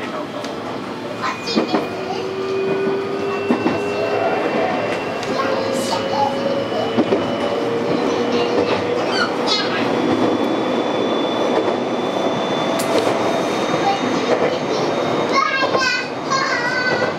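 JR West 223 series electric train running, heard from just behind the driver's cab: a steady rumble of wheels on rail with a motor whine that slowly rises in pitch, and occasional short clicks from the track.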